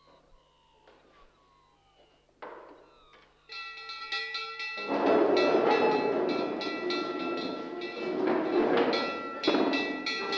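An electric school bell starts ringing about two and a half seconds in and keeps ringing, signalling the break. From about five seconds in, the loud scrape and clatter of boys pushing back wooden chairs and desks and getting up joins it.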